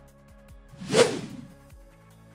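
A single whoosh transition sound effect: a short noisy swell that builds, peaks about halfway through, then fades quickly.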